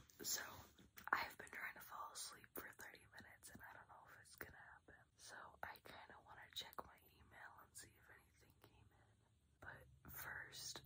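A woman whispering quietly to the camera, in short breathy phrases with pauses.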